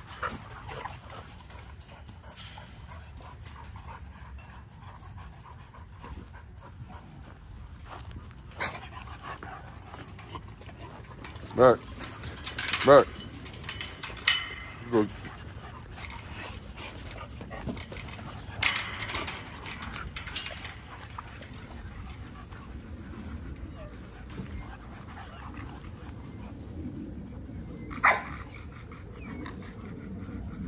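XL American Bully dogs barking in short, scattered bursts from a kennel pen: a loud cluster of barks a little before halfway, a few more just past halfway, and a single bark near the end.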